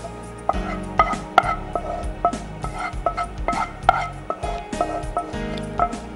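Background music with a steady beat and held notes.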